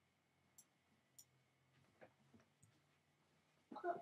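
A few faint computer mouse clicks, spread out over a few seconds, against near-silent room tone.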